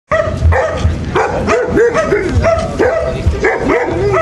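A dog barking and yipping repeatedly, about two or three short calls a second, each rising and falling in pitch.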